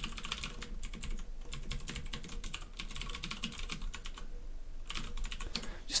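Typing on a computer keyboard: runs of quick keystrokes, with a short pause a little after four seconds in before a few more keys.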